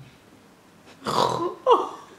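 A woman's breathy, choked laugh: a rush of breath about a second in, then a short voiced sound falling in pitch.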